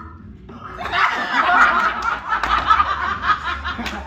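A small group of people laughing and shouting together, breaking out loudly about a second in.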